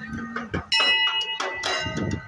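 Metal temple bell struck a little under a second in, its ringing tones hanging on after the strike, over the chatter of a crowd.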